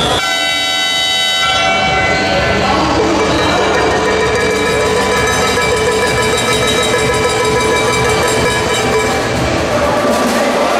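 Horns sounding over the steady noise of a crowd in a sports hall: one held horn tone for about the first two seconds, then a lower held horn from about three seconds in until near the end.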